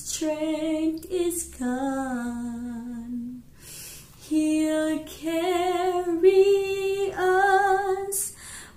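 A woman singing a slow hymn unaccompanied, with long held notes that waver in vibrato. She breaks off about halfway through for an audible breath, then carries on.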